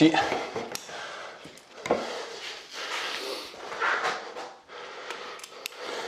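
Suspension trainer straps being handled and adjusted: nylon webbing rubbing and sliding, with scattered light clicks and knocks from the buckles and handles.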